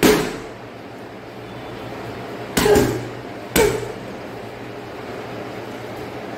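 Boxing-gloved punches striking a hanging heavy punching bag: three thuds, one at the start and two more about a second apart midway through.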